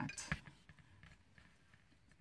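Two quick knocks as a cast brass hook is set down against a hard surface.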